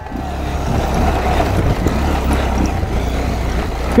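Motorcycle engine pulling away and running under throttle over a rough, stony dirt trail. It grows louder over the first second and then holds steady.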